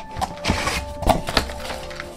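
Packaging handled on a tabletop: a few light knocks and a brief rustle of cardboard as boxes are moved and one is picked up.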